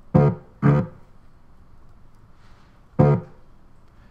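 Three short sampled cello notes played back through a Max/MSP sampler patch, each starting sharply and cut off after about a third of a second: two in quick succession at the start, then one about three seconds in.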